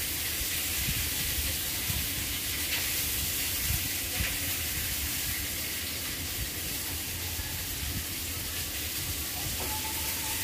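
Steady, even hiss with a low rumble beneath it.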